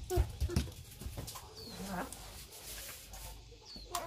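A few soft knocks and rustles near the start as hands move plastic bags inside a styrofoam box, with two faint, brief high chirps later on.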